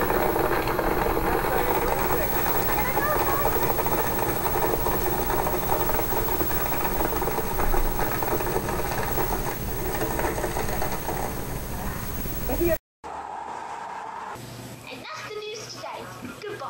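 Countertop blender motor running at full power as it crushes glow sticks in its jar, a steady dense whir, heard off a television's speaker. The sound cuts off suddenly a little before the end.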